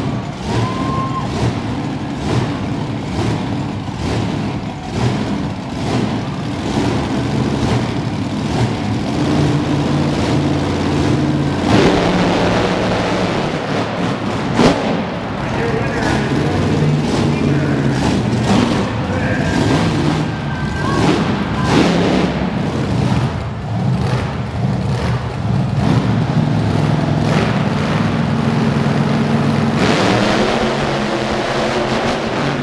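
Monster truck engines racing, their pitch rising and falling as the trucks rev and run, with occasional sharp knocks.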